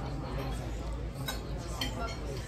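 Restaurant table ambience: a steady low hum and murmur of background voices, with two short, light clinks of tableware, about a third of the way through and near the end.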